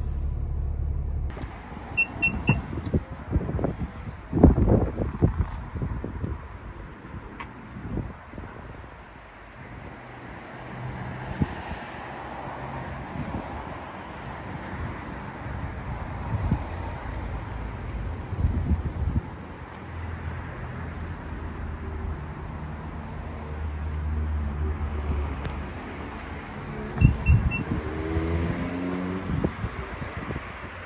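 Outdoor car-park noise with traffic and wind, and a few knocks a few seconds in. Near the end the Renault Rafale's powered tailgate gives three short warning beeps and its motor whines rising as the tailgate starts to close.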